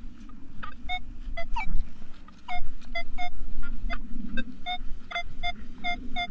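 Nokta Makro Legend metal detector giving short, broken target beeps at one mid pitch, about two or three a second, with a few brief chirps, as the coil sweeps over a deep target. The patchy response marks a really iffy, deep signal.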